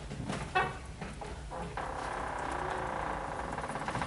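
A few faint short knocks, then, a little under halfway in, a steady mechanical hum with a fast flutter starts and keeps going.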